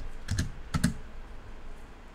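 A few computer keyboard keystrokes, clustered in the first second.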